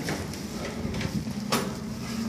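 Quiet footsteps and movement in a stairwell over a steady low hum, with a sharp click a little past halfway as the stairwell door is opened.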